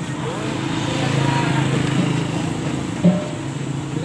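A motor vehicle engine hum on the road, swelling in the middle and easing off as it passes. A single sharp knock about three seconds in.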